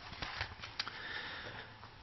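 A man's faint breath through the nose in a pause between sentences, over quiet room noise with a few small clicks in the first second.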